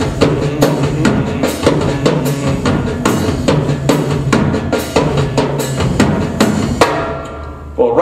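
A drum kit played live in a steady, upbeat groove with about two strong hits a second. The playing stops about seven seconds in and the last hit rings out.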